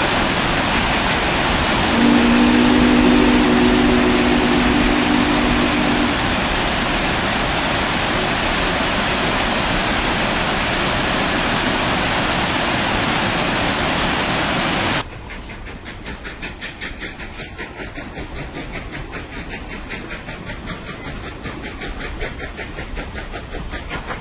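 A waterfall's falling water rushing loudly and steadily at close range, with a low steady tone held for a few seconds near the start. The rush cuts off suddenly about two-thirds of the way through, leaving a quieter hiss with a fast regular pulsing.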